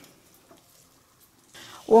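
Water trickling from soaked soya chunks squeezed by hand over a pan: mostly quiet, with a brief soft trickle near the end.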